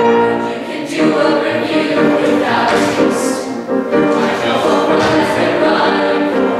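A mixed group of young singers, men and women, singing together as an ensemble with grand piano accompaniment.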